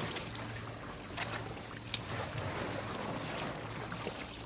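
Wet rubber inner tube being pulled and dragged out of a forklift tire: rubbing and scraping, with a couple of sharp knocks, over a steady low hum.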